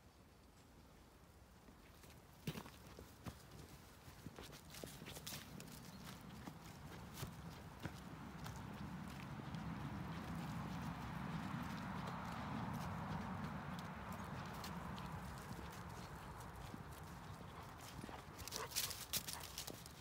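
Faint footsteps and rustling of someone walking over grassy pasture, with scattered light steps and a soft noise that swells through the middle and eases off.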